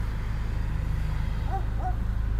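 Steady low rumble of background noise, with two faint short tones near the end.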